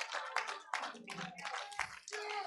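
Scattered, irregular hand clapping from the congregation, a few claps a second.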